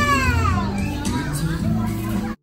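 A young child's high-pitched vocal squeal, peaking and then sliding down in pitch within the first half second, over background music with steady low notes.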